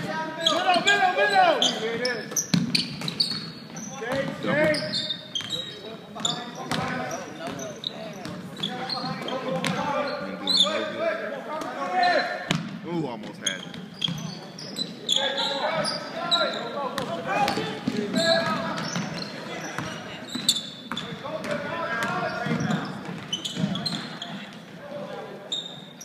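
Sounds of a basketball game in a school gymnasium: a ball bouncing on the hardwood floor with occasional sharp thuds, under continuous indistinct voices of spectators and players talking and calling out.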